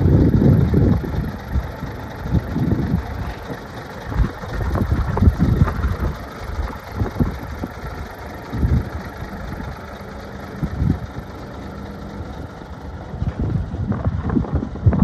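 Mack R-series semi tractor's diesel engine idling, partly covered by wind gusting on the microphone.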